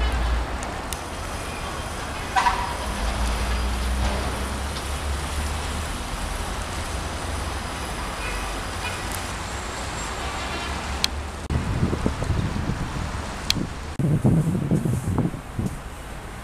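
Outdoor ambience of wind on the microphone over distant road traffic, with a brief horn toot about two and a half seconds in and louder, uneven rumbling from the wind in the last few seconds.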